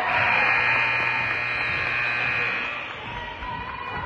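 Gym scoreboard horn sounding once, a steady blare that lasts about two and a half seconds and cuts off, signalling a stoppage of play. Crowd chatter is heard faintly underneath.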